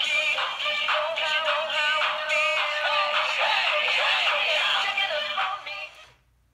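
Two Gemmy Frogz animated singing plush frogs playing a song through their built-in speakers: high-pitched, sped-up synthetic voices over a beat, with a thin, tinny sound that has no bass. The song stops about five and a half seconds in.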